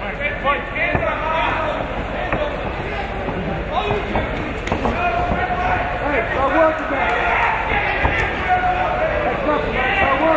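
Several voices of spectators and cornermen shouting over steady crowd noise, with a few short thuds.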